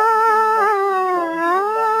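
A woman's voice singing one long held note on a 1953 Hindi film-song recording. The pitch dips about a second in and rises back.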